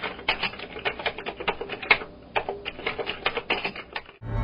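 Fast typing on a laptop keyboard: a dense, uneven run of key clicks, with a short pause about two seconds in.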